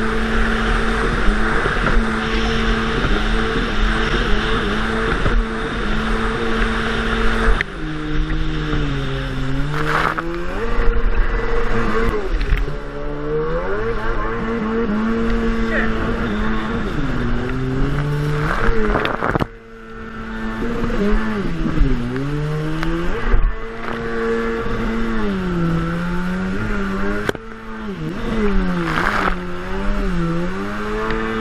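Sea-Doo HX jet ski's two-stroke engine running at full throttle, over the hiss of spray and wind. From about eight seconds in, the revs drop and climb back again and again, about six times, as the throttle is eased off and reapplied. Midway the engine briefly goes almost silent before picking up again.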